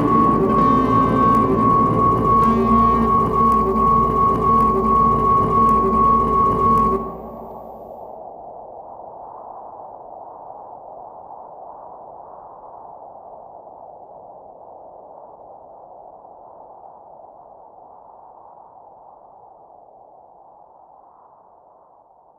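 Instrumental outro of a new-age song with drums and a high sustained tone, which cuts off suddenly about seven seconds in. A soft, airy drone is left behind and slowly fades out.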